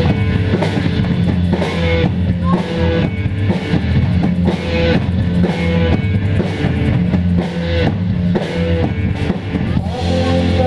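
Live rock band playing an instrumental passage: a drum kit keeps a steady beat under electric guitar.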